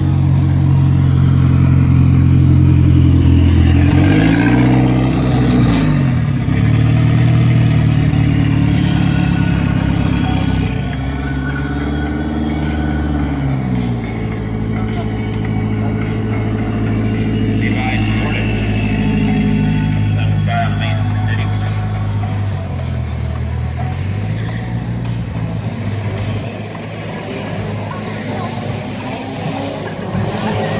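Car engine running with a deep, steady note, revved up and back down twice, about four seconds in and again around twelve seconds in; the note dips briefly about two-thirds of the way through.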